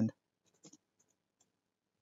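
A few faint computer-keyboard keystrokes as a word is typed, after the tail of a spoken word.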